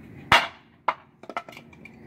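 Wooden bowl with an epoxy inlay being thrown away and landing on a paved patio: one hard knock, then a few lighter clatters as it bounces and settles.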